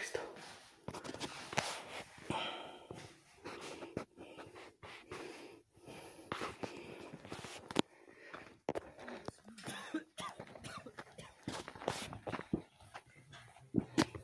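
Faint, irregular knocks and rustles with breathing close to the microphone, and an indistinct low voice.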